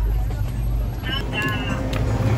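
School bus engine running with a steady low rumble, heard from inside the bus, with young voices talking over it from about a second in.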